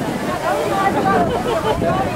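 Several people talking at once in a small group, overlapping chatter with no single clear speaker.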